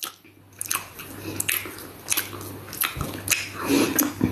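A person chewing and biting food close to the microphone: irregular crunchy clicks, several a second, starting about half a second in.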